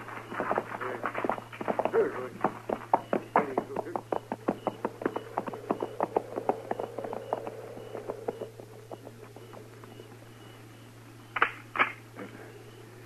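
Galloping hoofbeats, a radio sound effect, fading away over several seconds, then two sharp cracks near the end.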